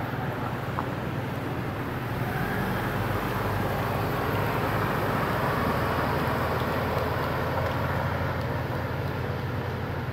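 Road traffic noise: a steady rush with a low rumble underneath that swells through the middle and eases near the end.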